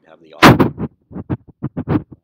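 A man's voice in short broken bits, with one very loud, sudden crackling burst about half a second in.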